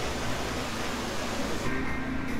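Steady hiss of hot water poured in a thin stream from a gooseneck kettle into an AeroPress, over faint background music.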